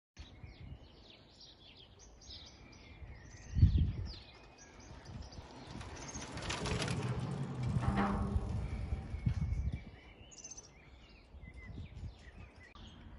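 Small birds chirping and calling throughout, with a single low thump about three and a half seconds in. A passing car swells up from about five seconds in and fades away by about ten seconds.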